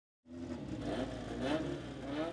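Car engine running and revving, its pitch climbing about halfway through.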